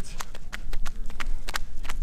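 Footfalls of two people running on a paved road: quick, even steps, several a second, over a low rumble of camera handling.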